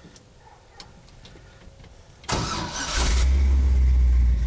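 Quiet for about two seconds, then the 350 cubic-inch Chevrolet V8 is started: a short crank, then it catches about three seconds in and settles into a loud, deep idle through its Magnaflow dual exhaust.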